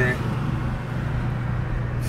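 Steady low engine hum and road noise inside the cab of a supercharged Roush F-150 V8 pickup, holding an even pitch with no revving.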